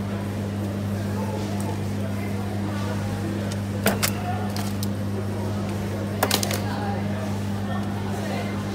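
Steady low electrical hum of supermarket freezers. Sharp clicks and rattles of plastic-wrapped packs handled in a chest freezer's wire basket come about four seconds in and again about six seconds in.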